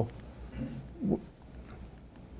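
Two brief, faint vocal murmurs from a person's voice, about half a second and a second in, over quiet room tone: a hesitation between spoken phrases.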